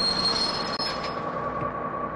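City bus brakes squealing as the bus is brought to a sudden stop: a steady high-pitched squeal over road rumble, its highest tone fading out about a second in.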